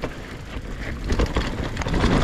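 Mountain bike riding fast down a steep, loamy dirt trail: wind rushing over the microphone, with tyre noise and scattered rattles and clicks from the bike over the bumps.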